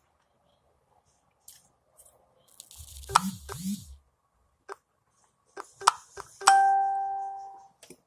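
Close-miked eating sounds: scattered small clicks and a brief hummed vocal sound about three seconds in. Then, about six and a half seconds in, comes the loudest sound, a sharp clink of tableware that rings on with a clear tone and fades over about a second.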